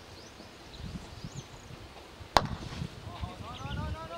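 A single sharp crack of a cricket bat striking the ball, about two seconds in. A brief shouted call follows near the end.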